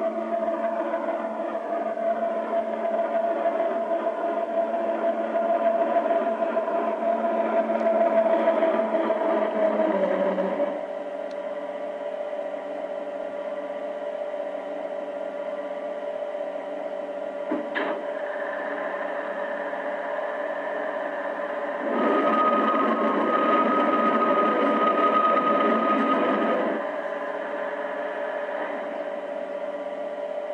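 The sound decoder of an LGB model Rhaetian Railway electric railcar plays its running sound through the model's small loudspeaker: a steady electric-drive hum that drops in pitch and level about ten seconds in as the train comes to a stop. Later comes a single click, then a louder hissing hum with a high tone for about five seconds.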